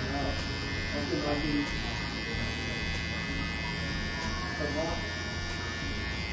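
T-blade hair trimmer running with a steady electric buzz while edging the hairline around the ear.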